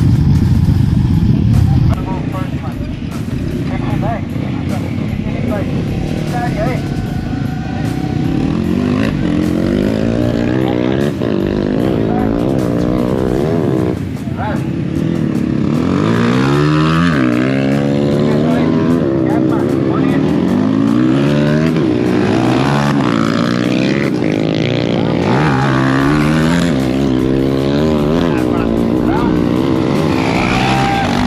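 Several dirt bike engines idling and revving together at a start line, their pitch rising and falling again and again as the throttles are blipped, growing busier in the second half.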